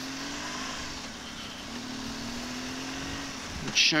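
BMW R1200GS boxer-twin engine running at a steady, moderate pace, its note dipping briefly about a second in and then rising slightly, under a constant rush of wind and road noise on the bike-mounted microphone.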